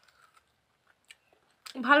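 A person chewing a mouthful of fried cutlet, faint small crunchy clicks, with a woman's voice starting near the end.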